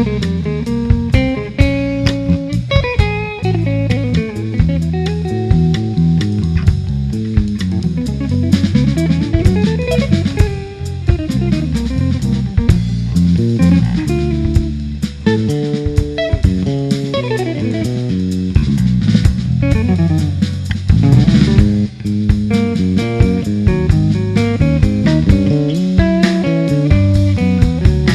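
Jazz guitar trio playing live: a semi-hollow electric guitar plays quick runs that climb and fall, over electric bass and a drum kit.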